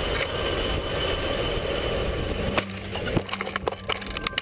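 Steady rumble of a bicycle on a crash-test rig rolling along an asphalt track. From about two and a half seconds in comes a rapid series of sharp knocks and clatters as the bicycle crashes.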